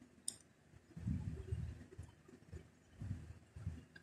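Faint handling sounds of hands working a crochet hook through yarn: soft irregular rustles and bumps, with a small click about a quarter of a second in.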